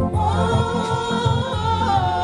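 A women's church choir singing a gospel song together over electronic keyboard accompaniment with a repeating bass line; the voices come in right at the start.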